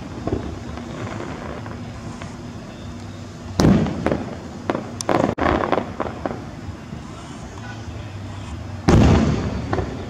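Aerial fireworks shells bursting: a loud boom about three and a half seconds in, a cluster of smaller sharp pops and crackles around five seconds in, and another loud boom near the end, each boom trailing off over about a second.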